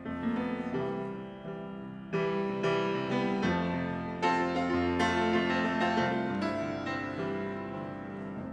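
Kawai piano played solo: chords and a melody struck one after another, each note ringing and fading before the next, with louder strikes about two and four seconds in.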